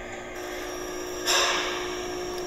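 Steady hum with a faint high whine, the background sound of the comparison videos just started on the two smartphones, with a short burst of rushing noise about a second and a half in.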